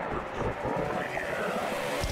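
A man laughing over a rough, noisy background.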